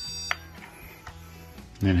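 Electronic metal-scanning stud finder giving its steady high-pitched alert tone while held over rebar in a concrete slab, signalling metal detected; the tone cuts off with a click about a third of a second in, leaving a faint low hum.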